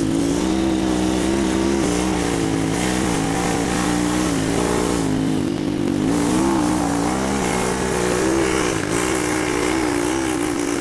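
Off-road sidecar motorcycle engine running steadily, its pitch wavering up and down with the throttle.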